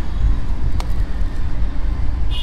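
Low, steady rumble of street traffic, with one faint click about a second in.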